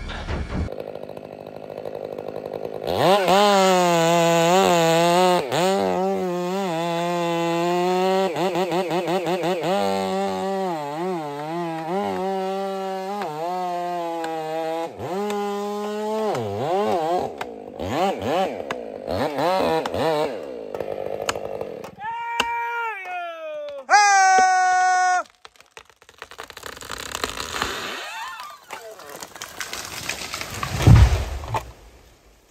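Large chainsaw cutting through a redwood's trunk in the felling cut, its engine pitch wavering under load for over a dozen seconds. It then revs higher in short bursts and cuts off suddenly about 25 seconds in, as the tree starts to go.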